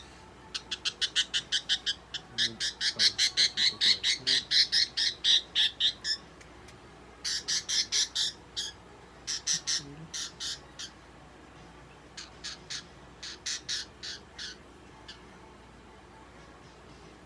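A budgerigar squawking in rapid runs of short, harsh calls, about five or six a second, while held in a hand. The runs stop and start again several times and thin out near the end.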